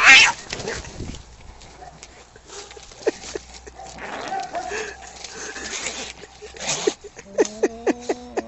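Two cats fighting: a loud rising screech right at the start, then scuffling through the middle, and a low, stuttering yowl near the end.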